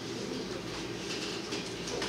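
Steady low room hum, with faint scattered ticks and rustles over it.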